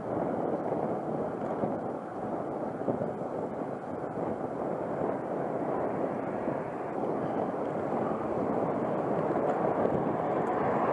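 Steady rushing of wind over an action camera's microphone mounted on a moving road bike, mixed with tyre and road noise, getting slightly louder near the end.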